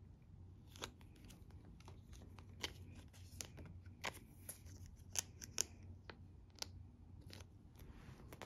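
Faint handling of plastic: photocards in clear plastic sleeves being slid into a binder's plastic nine-pocket pages, with about eight sharp little clicks and crinkles spread through.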